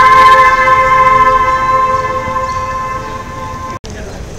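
A single held musical note, steady in pitch with clear overtones, fading slowly, then cut off abruptly near the end.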